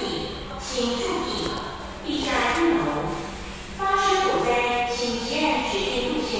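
An echoing voice announcement over a building's public-address loudspeakers, hard to make out, calling for evacuation during a fire alarm.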